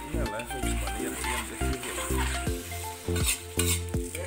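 A metal ladle stirs and scrapes food sizzling in a large metal wok. Loud music with a regular heavy bass beat plays under it.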